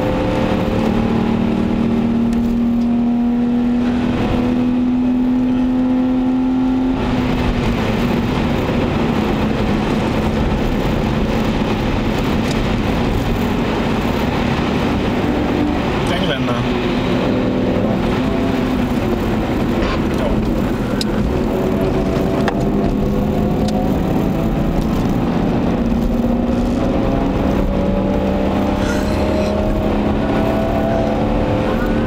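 BMW 525i E34's M50B25TU 2.5-litre straight-six engine pulling the car along, heard from inside the cabin over steady road and tyre noise. Its note holds steady for the first several seconds, eases off about seven seconds in, and rises in pitch through the last several seconds as the car accelerates.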